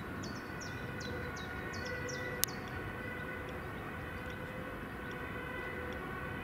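Birds chirping in quick downslurred calls, two to three a second, over a steady distant tone with overtones. A single sharp click comes about two and a half seconds in.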